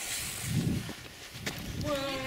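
People running away from a just-lit firework fuse: hurried footsteps and rustling thuds, with a short shout or laugh near the end.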